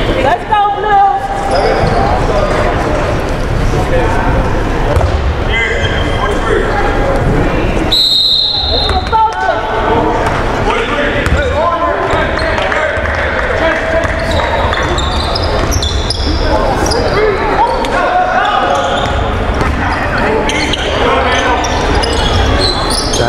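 A basketball being dribbled on a hardwood gym floor during play, with the voices of players and spectators echoing in a large gym.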